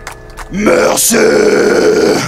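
Live brutal death metal: a deep guttural growled vocal comes in loudly about half a second in and is held, with the band under it.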